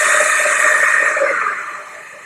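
Six electric linear actuators of a Stewart platform running together as the platform drives back to its home position: a steady motor whine with a hissing edge. It fades away over the last half second or so as the platform settles.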